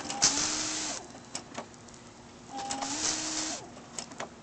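BMW M5 headlight washer firing twice: each time the pop-out nozzle sprays the lens for about a second with a hissing jet over a steady pump whine. There are a couple of sharp clicks between and after the sprays.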